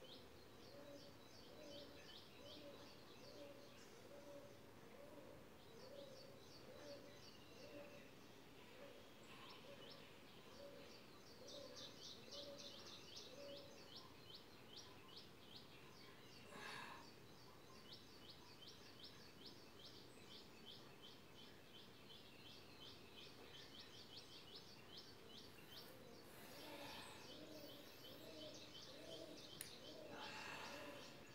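Faint bird calls: long runs of quick high chirps, with a lower note repeated about twice a second through the first half and again near the end.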